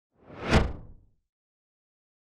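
A single whoosh sound effect for an animated title logo: it swells quickly, peaks about half a second in and fades away within about a second.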